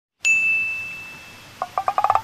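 A single bright ding that rings out and slowly fades, followed near the end by a quick run of short pitched blips.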